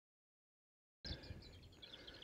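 Silence for about a second, then faint songbirds chirping over a low background of outdoor noise.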